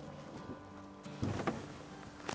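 Hybrid caravan side wall sliding out on its runners after the centre lock is released: a short sliding noise with a couple of light knocks a little past the middle.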